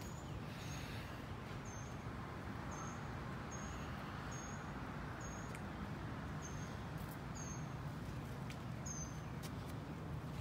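A bird repeating a short, high chip note about once a second, over a steady background hiss of outdoor noise.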